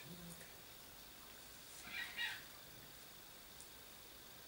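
A dachshund gives two short, high-pitched whimpers in quick succession about two seconds in.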